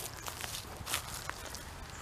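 Footsteps on a forest floor of dry leaves and twigs, giving a few light scattered crackles and snaps.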